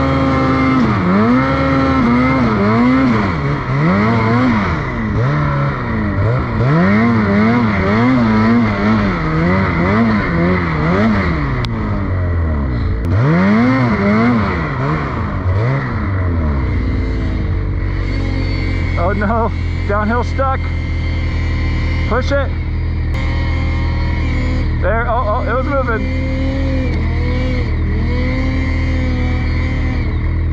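Ski-Doo Freeride 850 Turbo snowmobile's two-stroke engine revving up and down over and over as the sled pushes through deep powder, then settling to a steady idle about seventeen seconds in.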